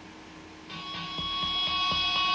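Recorded song starting to play back, an unreleased single: it comes in about two-thirds of a second in with a held chord and a light, even beat.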